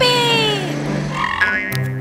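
A cartoon elephant character's voice giving one drawn-out cry that falls in pitch over background music.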